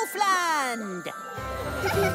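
Cartoon sound effects: a tinkling sparkle with a falling, whistle-like glide over the first second. Background music with a bass line comes in about a second and a half in.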